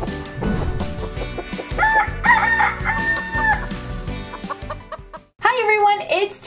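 Chicken clucks and a rooster crow over a short music jingle, with one call held for about half a second. It cuts off suddenly about five seconds in, and a woman's voice starts just before the end.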